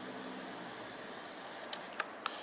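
Faint, steady low hum of room tone, with a couple of small clicks near the end.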